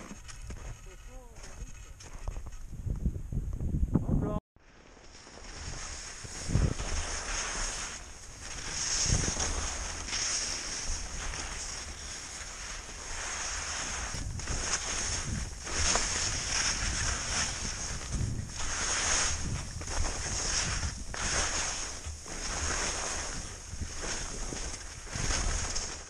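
Skis sliding and scraping over snow on a descent, a swell of hiss about every second or so as each turn is made, with wind on the microphone.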